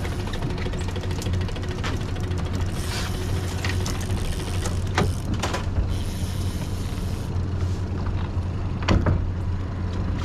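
Outboard kicker motor running steadily at trolling speed, a low even drone, with scattered sharp clicks and knocks, the loudest about five and nine seconds in.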